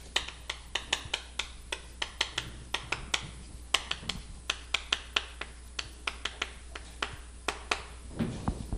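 Chalk writing on a chalkboard: a quick, irregular run of sharp taps and clicks, several a second, as each stroke of a formula is put down.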